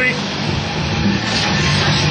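Steady din of an indoor ice rink during play, with a constant low hum underneath.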